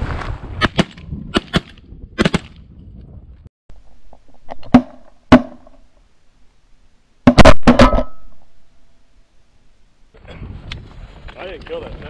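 Shotgun shots at passing Canada geese: a quick string of shots in the first couple of seconds, two more about five seconds in, and the loudest burst of three rapid shots about seven seconds in.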